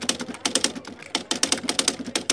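Rapid typing clicks, a keyboard-typing sound effect that runs as an on-screen caption appears letter by letter.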